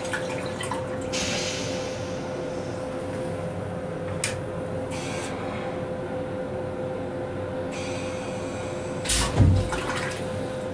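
Stainless-steel toilet of a Metro-North M7 railcar going through its flush cycle: short hisses of rinse water, a sharp click about four seconds in, then a longer spray of water into the bowl and a loud low thump near the end. A steady hum runs underneath throughout.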